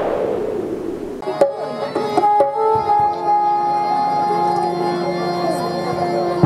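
A whooshing intro sound effect fades out, and about a second in live stage music starts: steady held harmonium notes with a few drum strokes.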